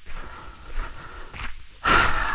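A man's audible breath in near the end, a short hiss just before he speaks again, over faint outdoor background noise.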